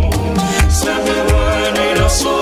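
Ghanaian gospel music from a medley track, with a steady beat: a low bass-drum thump about every two-thirds of a second under sustained chords.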